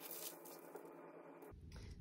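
Faint rustling of tracing-paper pattern pieces being laid out and smoothed flat on a table by hand.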